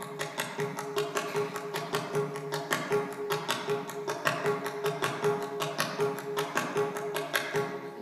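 Mridangam played in a fast, even sarva laghu pattern: a dense run of strokes, with the right-hand head ringing at one steady pitch underneath.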